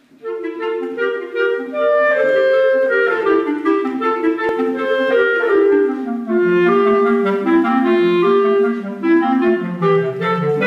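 Clarinet and basset horn playing a classical duet, both entering together at the start in quick, short notes, the basset horn's lower line dropping lower about halfway through.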